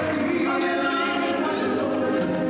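Stage musical cast singing together as a choir, holding long notes over the show's musical accompaniment.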